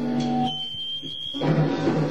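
Live punk rock band. About half a second in the band drops out, leaving a single high steady tone for about a second. The full band, guitar and drums, then comes back in.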